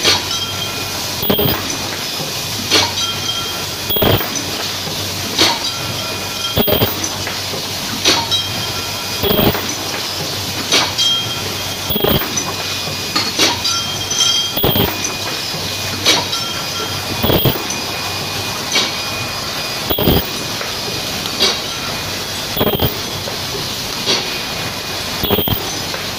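Paper bucket forming machine running at a steady pace, a sharp clank about every second and a third with each machine cycle, over a continuous mechanical hiss.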